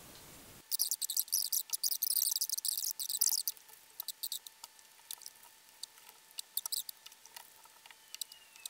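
Pop Rocks popping candy crackling in the mouth. It starts suddenly about half a second in as a dense, high-pitched crackle for about three seconds, then thins to scattered pops.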